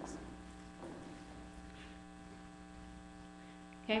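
Steady electrical mains hum made of a few constant tones, with no words over it until a brief spoken "okay" right at the end.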